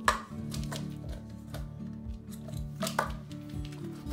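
Background music with a steady beat, with sharp knocks over it: a paper cup striking the floor as a small dog plays with it, once at the start and again about three seconds in.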